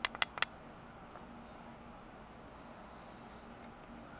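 Three sharp clicks in quick succession right at the start, then quiet room tone with a faint steady hum.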